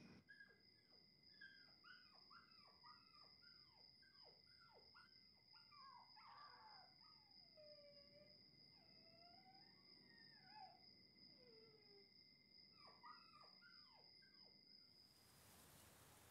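Faint, distant dogs yelping and howling in a run of short calls falling in pitch, over a steady high tone that cuts off near the end.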